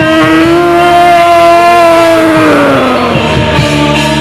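Live Javanese jaran kepang accompaniment music: one long held note, steady and then sliding down in pitch and fading after about two and a half seconds, over light percussion.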